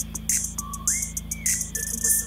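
K-pop song playing: a whistled melody with sliding notes over a sparse beat with crisp hi-hat strokes.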